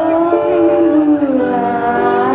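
A woman singing a slow love song with a live band, holding long notes that slide between pitches.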